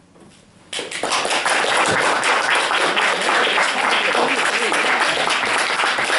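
Audience applause breaking out suddenly less than a second in, after a brief hush, and going on steadily and loudly.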